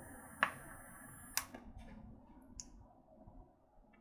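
A quiet, long draw on a vape, a faint hiss of air drawn through the atomizer that fades out after about two and a half seconds. Two sharp clicks come about half a second and a second and a half in.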